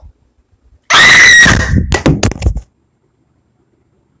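A very loud, piercing human scream starting about a second in and lasting under two seconds, then cutting off abruptly.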